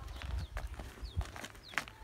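Bull's hooves stepping on dry dirt as it is led at a walk: a few soft thuds and scuffs. A small bird chirps repeatedly in the background.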